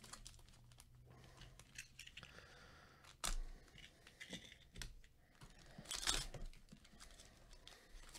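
Foil wrapper of a Panini Chronicles baseball card pack crinkled and torn open by gloved hands, a run of small crackles with a sharp rip about three seconds in and the loudest, longer tear around six seconds.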